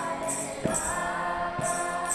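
A group of voices singing a devotional chant in long, gliding notes, with jingling hand percussion struck on the beat.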